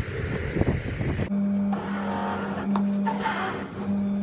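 Road noise from inside a moving vehicle, then after about a second a sudden change to an electric shoe-polishing machine. Its motor hums steadily, and the rotating brushes scrub a shoe in two bursts.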